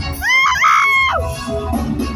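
A loud, high-pitched scream from an audience member close to the microphone: it rises, holds for about half a second and falls away, over live band music.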